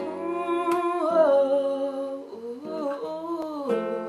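Strummed acoustic guitar chords left ringing, with a girl humming a wordless melody over them as the song's intro.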